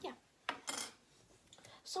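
Small hard plastic clicks as teal toy window pieces are worked and snapped off their plastic frame (sprue): a sharp click about half a second in, a short rattle right after, and a fainter click near the end.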